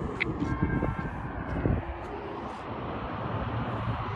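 Road traffic heard outdoors, a steady rumble.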